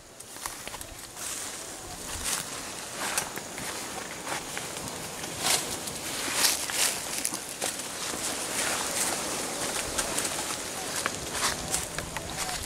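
Steady outdoor background hiss with irregular soft rustles and clicks, scattered throughout, from close handling and movement.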